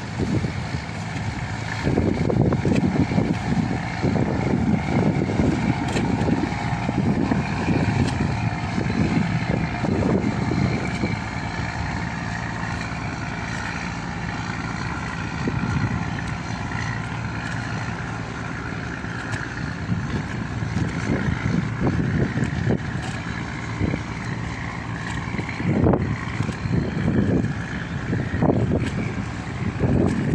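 Boat engines running with a steady hum, while gusts of wind buffet the microphone with uneven low rumbles.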